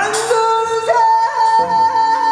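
Live experimental, improvised electronic and jazz-rock music: a quick rising swoop at the start settles into held, slightly bending pitched tones over an electronic backdrop.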